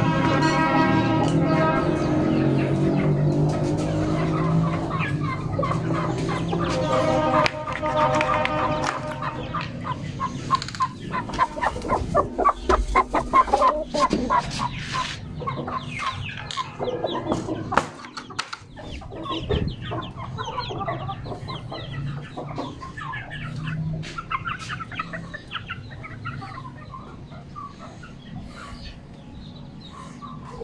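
Background music for roughly the first third, then Aseel chickens and chicks clucking and cheeping, with many short, rapid calls.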